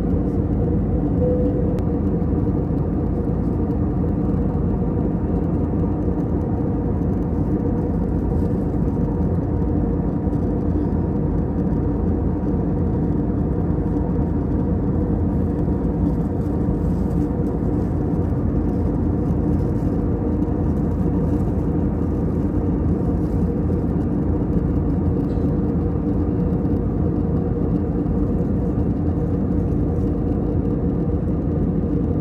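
Cabin noise of a jet airliner in cruise, heard from a window seat: a steady, unchanging rush of engine and airflow noise with a low hum beneath it.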